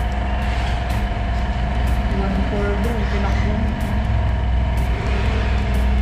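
A steady low mechanical hum, with faint voices in the background.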